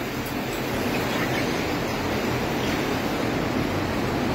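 Steady mechanical noise of a dairy milking parlor's machinery: the milking system's vacuum and milking units running continuously while cows are being milked.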